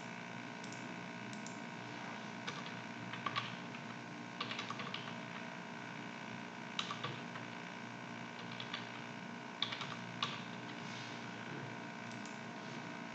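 Computer keyboard keys tapped in short, scattered clusters of clicks while dates are typed into a form, over a faint steady background hum.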